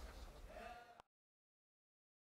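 Near silence: the faint faded tail of the soundtrack, with a brief held voice-like note, then dead digital silence from about a second in.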